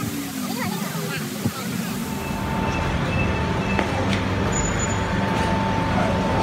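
Street traffic noise, a low steady rumble that takes over about two seconds in after a short stretch of distant talking voices; a thin steady high tone sounds through the latter part.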